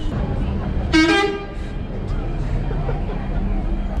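Steady low rumble of a city bus's engine and road noise inside the crowded cabin, with one short vehicle horn toot about a second in.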